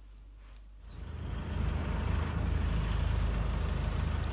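After about a second of quiet room tone, a vehicle engine idling close by starts abruptly: a steady, loud running sound with a heavy low end. It is most likely the engine of the ambulance standing right beside the camera.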